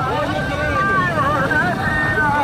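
A voice singing in long, wavering phrases whose pitch bends up and down, over a steady low outdoor rumble.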